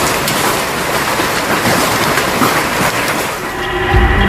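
Heavy rain and hail falling hard: a dense, steady hiss made of countless small impacts.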